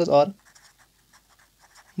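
A felt-tip pen writing a word on paper: a quick run of short, faint scratching strokes.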